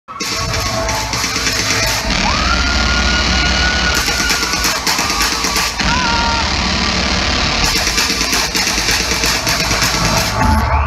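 Rock band playing live and loud in a large hall, heard through a low-quality audience recording, with a few long held high tones over a dense wash of guitars and drums.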